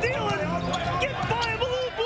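Basketball being dribbled on a hardwood court, a few sharp bounces, heard through the game's broadcast audio.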